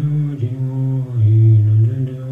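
A deep voice chanting a Buddhist mantra in long held notes on a low, nearly steady pitch, with a brief break about a second in.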